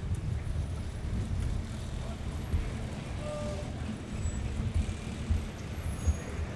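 Low, uneven rumble of handling and wind noise on a camera carried while walking, with faint voices in the background.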